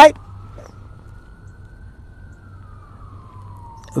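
A distant siren, faint, making one slow wail that rises in pitch and then falls away, over a low steady hum.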